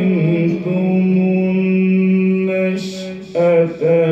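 A man reciting the Quran in melodic tajweed style, holding one long, steady note for nearly three seconds. A quick breath follows, then the next phrase begins.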